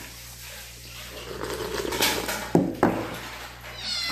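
A kitten meowing, with a high call at the very end, and a couple of sharp clicks and clinks from the plate in between.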